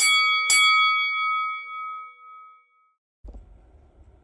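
Two bright bell dings about half a second apart, from a subscribe-button notification-bell sound effect, ringing out over about two seconds. Near the end a faint low outdoor rumble comes in.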